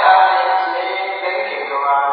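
Several voices chanting together in long, held notes, with no instruments heard.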